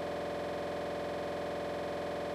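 A steady electronic hum with a buzzy edge, one unchanging pitch that holds without any variation.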